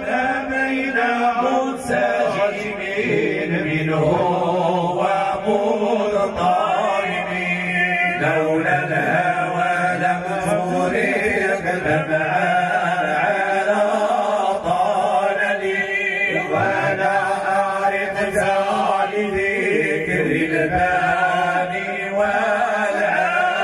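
Men chanting a devotional Mawlid praise song through hand-held microphones, their voices joining in long, wavering held notes.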